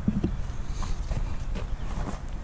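A few footsteps on gravel over a low, steady rumble.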